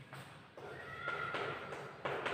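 Chalk writing on a blackboard, scraping, with a squeak of chalk on the board held for about a second from about halfway.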